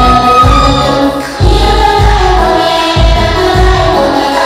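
Women singing over music with a steady, heavy bass beat: a lead voice through a microphone with other voices joining in. The music briefly drops in level just over a second in.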